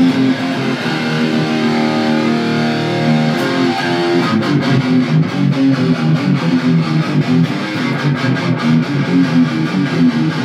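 Explorer-style electric guitar playing a heavy metal riff: held, ringing notes for about the first four seconds, then fast, even picked strokes from about four seconds in.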